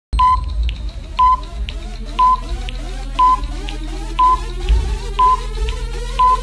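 Electronic TV-channel intro jingle: a short high beep once a second, with softer ticks between, like a clock ticking, over a slowly rising synth tone and a low drone.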